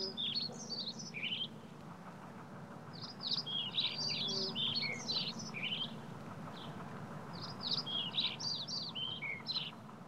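Small bird singing in three bursts of quick, high chirping phrases, at the start, from about three to five seconds, and from about seven and a half to nine and a half seconds, over a faint steady low hum.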